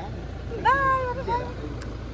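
Low, steady rumble of a car idling, heard with the door open. About half a second in, a short high-pitched voice rises and falls.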